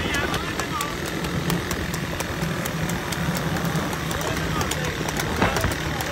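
Motorcycle engines running steadily in a pack alongside the racing horse cart, a continuous engine drone, with men's shouts and calls from the riders mixed in.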